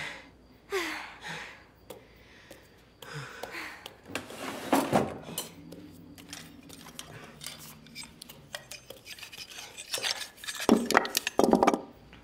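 Metal cutlery clinking and scraping on a table, with a dense run of sharp clinks near the end.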